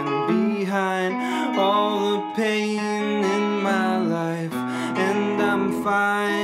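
Electric guitar playing an instrumental break in a folk-pop song: a melodic line with some notes bent in pitch over held low notes.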